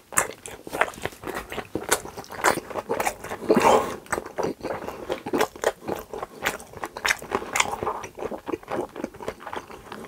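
Close-miked chewing of sauced steak: irregular wet mouth smacks and clicks, several a second, with a denser run of wet chewing about three and a half seconds in.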